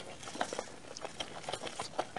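Close-miked chewing of soft food with closed lips: a steady run of short, irregular wet mouth clicks and smacks.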